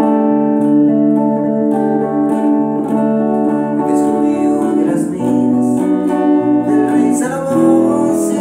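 An acoustic guitar and an electric guitar playing chords together, the chords changing every second or two.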